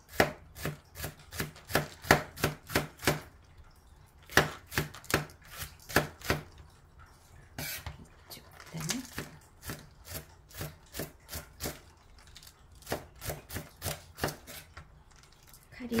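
Kitchen knife chopping green onion on a cutting board, steady knocks of about three a second in several runs with short pauses between them.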